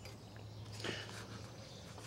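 Quiet background with a low steady hum and a faint brief rustle about a second in.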